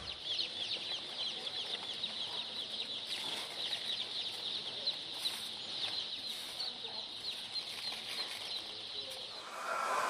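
A crowd of young chicks peeping, many short high falling cheeps overlapping one another, dying away just before the end.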